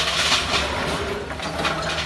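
Hyundai hydraulic excavator's diesel engine running steadily while its bucket breaks into the concrete of a collapsing building, with a crash of falling rubble at the start and rough scraping of debris after.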